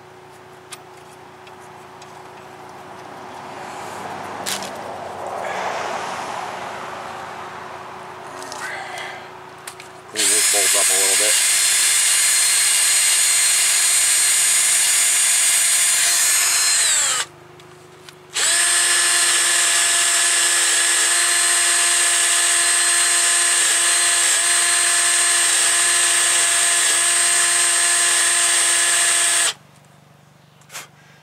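Cordless drill spinning a wire brush to clean the gunk off the threads of a brake caliper bracket bolt: two long, loud, steady runs with a short stop between, the pitch sagging as the first run winds down. Before it, a rush of noise swells and fades.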